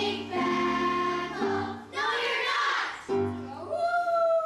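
Children's choir singing held notes in short phrases over a steady accompaniment, with a long sustained note starting near the end.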